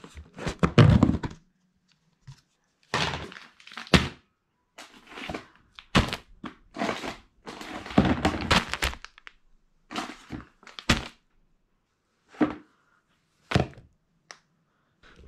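Irregular knocks, thunks and rustling from objects being handled, moved and set down, with short silent gaps between; a few sharp knocks come near the end.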